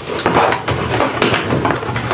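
Plastic parts of a small desk fan being handled and worked loose as its blade is pulled off the motor shaft: irregular rattling and scraping with a few sharp clicks.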